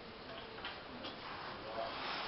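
Molten bronze being poured from a crucible into ceramic shell moulds, heard as faint irregular ticks and crackles over a steady hiss.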